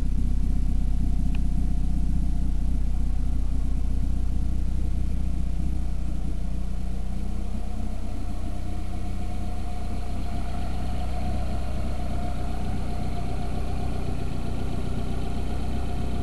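Engine of a high-mileage 1979 Volvo 240 (about 300,000 miles) idling steadily, a continuous low rumble. About ten seconds in, a thin steady whine joins it.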